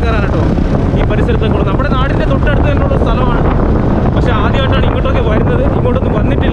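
Wind buffeting the microphone, a steady heavy rumble, with a vehicle running and indistinct voices underneath.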